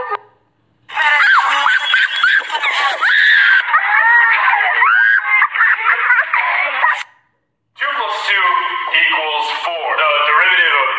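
A toddler's crying cuts off, then after a short silent gap loud voices shout and scream for about six seconds. After a second brief gap, a singing voice starts near the end.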